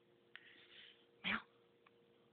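A cat giving one short mew with a falling pitch just past the middle, while being scratched near the base of her tail. It comes after a soft click and a faint rasping hiss, over a steady low hum.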